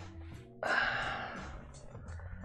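A man's breath out, a sigh-like exhale that starts suddenly about half a second in and fades over about a second.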